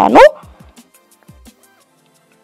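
A woman's voice trailing off on a rising pitch, then faint background music with a few held notes.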